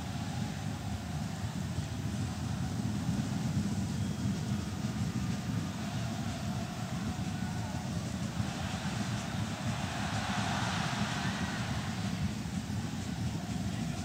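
Stadium crowd noise at a football match: the steady hum of a large crowd of spectators, swelling louder for a few seconds past the middle.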